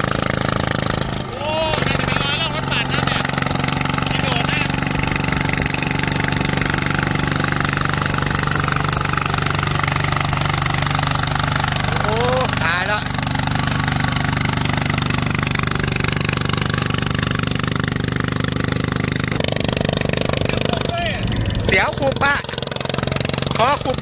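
Single-cylinder diesel engine of a walking tractor with cage wheels running steadily under load as it puddles a flooded rice paddy.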